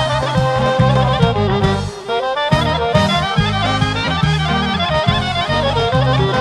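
Bulgarian folk band music: a clarinet plays a fast, ornamented melody over accordion, with a steady pulsing bass and drum rhythm underneath.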